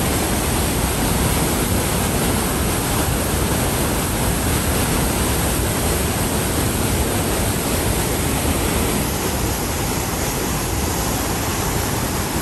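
Rhine Falls' white water crashing down right beside the listener: a loud, steady rush of falling water. It eases slightly about nine seconds in.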